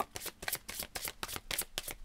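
A deck of oracle cards being shuffled by hand: a fast, irregular run of small papery flicks and clicks.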